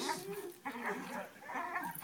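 Belgian Malinois gripping a bite suit, making a couple of short, quiet whines.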